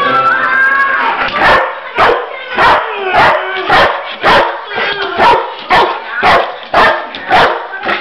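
A dog barking over and over in a steady rhythm, about two barks a second, starting about a second and a half in.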